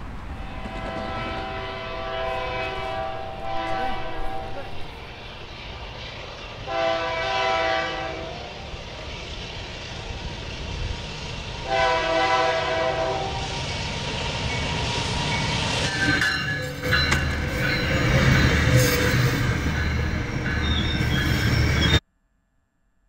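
Train horn blowing three times, one long blast and then two shorter ones, over a low rumble of an approaching train. The train then comes in close with a loud, rising rumble and clatter of wheels on rail, and the sound cuts off suddenly at the end.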